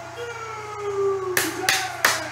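A person's voice held in one long, slowly falling tone, then two sharp smacks about one and a half seconds in.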